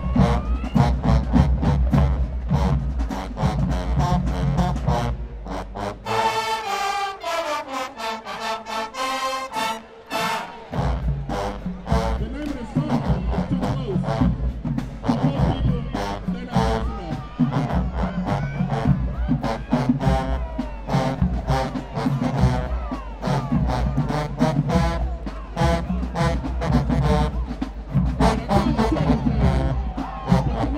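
HBCU marching band playing a rhythmic dance tune, with sousaphones and drums giving a heavy, steady bass. About six seconds in, the low brass and drums drop out for a few seconds, leaving the higher horns. The full band comes back in about eleven seconds in.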